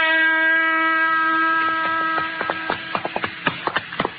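A music bridge ending on a long held chord that fades out about halfway through. Horses' hoofbeats come in under it, a steady run of several clops a second from riders on the move: a radio drama sound effect.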